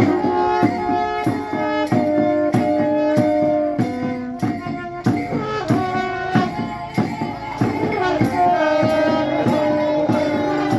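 Live music: a drum struck in a steady beat, about three strikes every two seconds, under held melodic notes that step from pitch to pitch.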